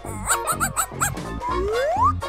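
Cartoon small-dog yip sound effects, four quick high yelps, over upbeat children's background music, followed near the end by a rising glide in pitch.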